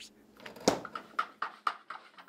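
A quick run of short knocks and clinks, about five in just over a second, from kitchen items being handled at an open refrigerator.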